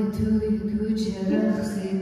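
A woman singing slow, held notes to her own ukulele accompaniment, at the opening of the song.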